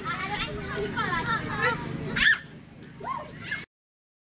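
Several people's voices talking and calling out, with one loud, high call about two seconds in; the sound then cuts off to dead silence shortly before the end.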